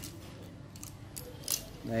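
Light handling noise from fishing rods being held and turned in the hand: a few short, sharp ticks and clicks of the rod's blank and fittings against hand and other rods.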